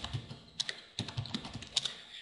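Typing on a computer keyboard: a short run of sharp key clicks as a single word is typed, then Enter. Most of the keystrokes come in the second half.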